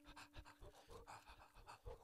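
Near silence between phrases on a homemade Japanese knotweed (Fallopia japonica) flute: a low held note dies away about half a second in, leaving faint breaths and small clicks.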